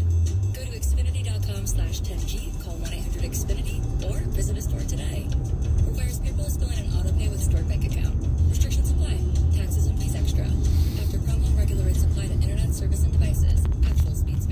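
Low, steady road and engine rumble inside a car's cabin while driving in traffic, with a car radio playing talk and music underneath.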